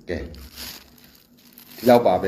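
A man speaking in a small room: a short word at the start, then about a second and a half of soft rustling hiss in the pause, then his speech picks up again near the end.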